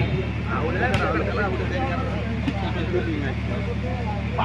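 Crowd of spectators chattering, many voices overlapping, over a steady low hum. A sharp knock comes about a second in.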